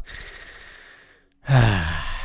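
A man's long breathy exhale, fading away over about a second, then about a second and a half in a voiced sigh that falls in pitch.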